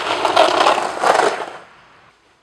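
Skis scraping over hard, icy snow in two loud swells about a second apart, dying away shortly before the end.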